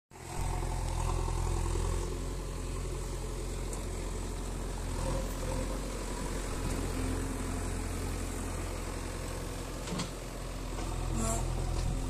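JCB 3DX backhoe loader's diesel engine running steadily. A couple of short knocks come near the end.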